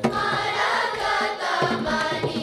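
A children's chorus singing a Carnatic song in unison, accompanied by regular mridangam drum strokes; a new sung phrase begins right at the start.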